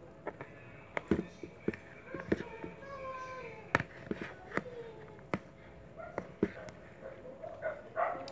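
Metal spoon clinking and scraping against the side of a plastic tub while stirring rice, with irregular sharp knocks a second or so apart.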